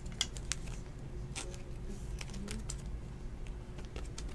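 Faint scattered clicks and taps as a die-cut trading card is handled and turned over between the fingers, over a low steady hum.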